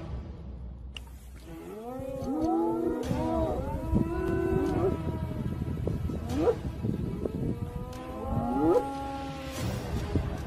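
A herd of large hoofed animals calling: many overlapping moo-like calls, each rising and falling in pitch, begin about a second and a half in and carry on over a steady low rumble.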